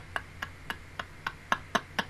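A woman's silent laughter: short breathy puffs about four a second, slowing and fading.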